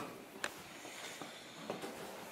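A few faint knocks in a quiet room, one sharper about half a second in: a horse's hooves stepping on a barn aisle floor as it is led and halted.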